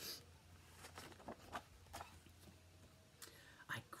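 Faint rustling and soft taps of a hardcover picture book's paper pages being turned and handled, loudest right at the start, with a word of speech beginning at the very end.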